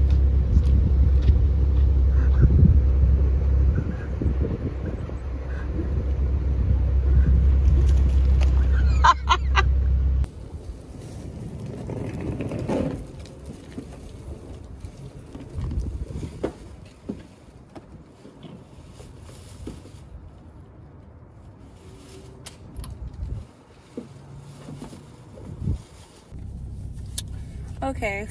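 A car's engine rumbling steadily at idle, heard from the driver's seat with the door open. It cuts off suddenly about ten seconds in, leaving a much quieter outdoor background with a few light knocks and rustles.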